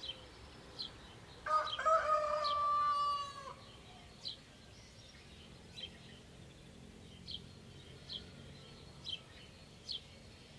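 A rooster crows once, a call of about two seconds starting about a second and a half in, ending on a long held note that cuts off. A small bird gives a short, high chirp about once a second.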